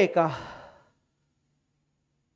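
A teacher's voice finishing the word "pKa", falling in pitch and fading out within the first second.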